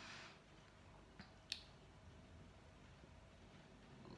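Near silence: room tone, with two faint clicks about a second and a half in.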